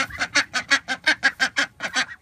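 Domestic ducks quacking in a quick, even run of short calls, about six a second.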